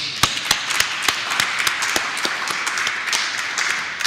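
Audience applauding: many hands clapping at once, starting suddenly and dying away soon after, with a few single claps standing out near the start.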